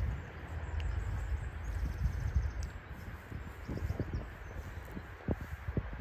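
Steady low outdoor rumble with a few soft footsteps on grass in the second half.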